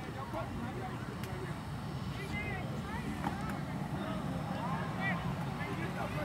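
Indistinct voices of people talking and calling out, over a steady low hum.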